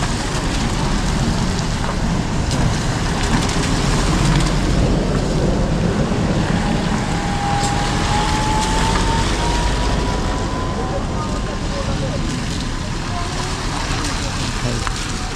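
Motorcycle engine running at low speed through stopped traffic, with other vehicles' engines around it and wind rumbling on the microphone. A faint whine rises slowly in pitch about halfway through.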